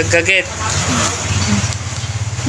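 A vehicle engine running steadily at low revs, a low pulsing hum, with a brief voice at the start.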